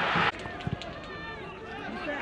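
Live football-match sound: a loud wash of stadium noise that cuts off suddenly at an edit, then players' shouts carrying across the pitch, with two sharp knocks just under a second in.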